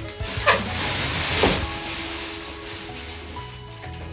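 Plastic wrap rustling and crinkling as it is pulled off a padded gig bag, with the loudest crinkles about half a second and a second and a half in, over background music.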